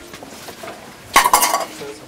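Clinks and clatter of a metal spoon against an enamel plate, with a short burst of rapid knocks a little past halfway through.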